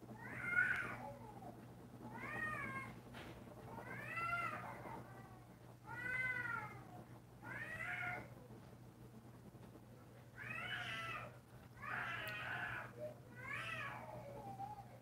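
A cat meowing over and over: about eight separate calls, each rising and then falling in pitch, spaced a second or two apart.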